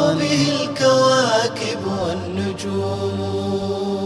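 Arabic nasheed, the programme's chanted theme: sung voice holding and bending a melodic phrase between lines of verse, over a low steady drone.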